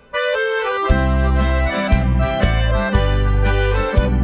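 Instrumental intro of a sertanejo song led by accordion, with bass and a steady beat coming in about a second in.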